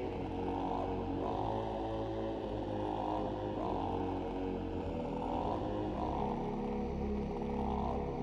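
Dark, droning background music: a low bed of sustained tones with a soft swell about once a second.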